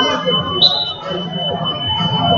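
Wrestling timer's buzzer sounding one steady high electronic tone as the match clock runs out at the end of the third period. A short, sharper and higher tone cuts in about half a second in, over gym chatter.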